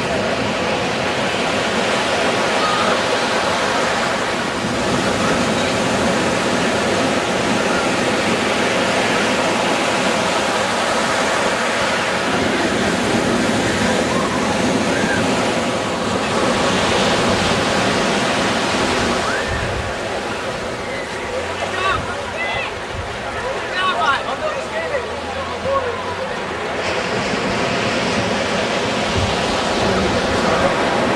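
Surf breaking and washing in the shallows, a loud, steady rush of water. Faint distant voices and calls come through it, mostly in the second half.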